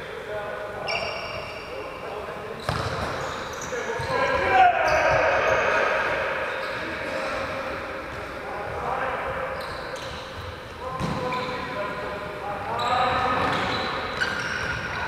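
Indoor ball game on a wooden sports-hall court: shoes squeaking on the floor, a few ball thuds, and players' shouts echoing around the large hall.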